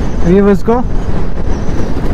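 Wind buffeting the microphone and road noise from a motorcycle riding at speed on a highway, a steady low rumble. A man says a short word about half a second in.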